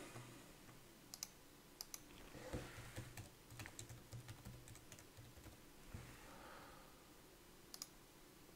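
Faint computer keyboard typing and clicks, a scattered run of light taps over several seconds.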